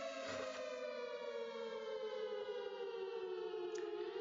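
Air-raid siren winding down, one long tone sliding slowly down in pitch.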